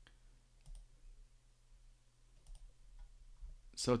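A few faint, sharp computer mouse clicks spaced over a low steady electrical hum.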